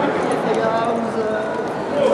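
Overlapping voices of several people talking in a large hall, with no single voice standing out.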